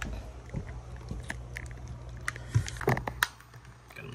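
Close-up handling noise of a phone being moved and set down: scattered clicks and rubbing, with a few louder knocks about three seconds in, over a low steady hum.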